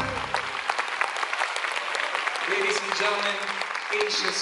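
Audience applauding after a live song, the band's final chord dying away in the first half-second.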